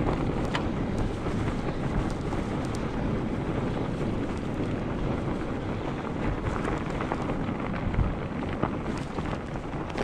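Wind buffeting the microphone on a moving fat-tire e-bike, over the steady noise of studded fat tires rolling on packed snow, with scattered small clicks and crunches.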